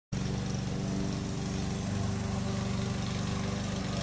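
A small engine running steadily at an even speed.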